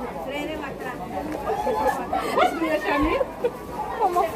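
People talking, several voices chattering, some overlapping.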